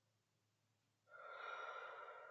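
A woman's deep breath out through the mouth in a guided deep-breathing exercise. It starts about a second in after near silence and lasts about a second and a half.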